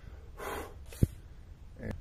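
A short, sharp breath out through the nose, then a single sharp click about a second in.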